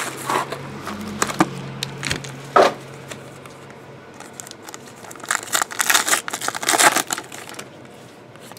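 Plastic wrapping and paper packaging of a trading-card box being handled and torn open, crinkling and rustling, busiest about five to seven seconds in.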